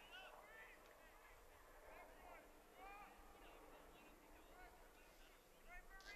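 Faint, distant honking of a flock of geese: short calls that rise and fall in pitch, repeated every second or so.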